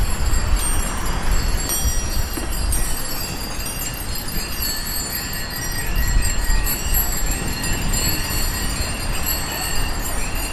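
Steady wind and road rumble from riding a bicycle over wet pavement. From about halfway through, a short high chirp repeats about twice a second.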